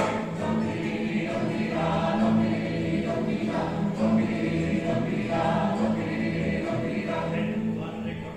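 Live plucked-string orchestra of guitars and bandurrias playing a tune, with voices singing along in chorus.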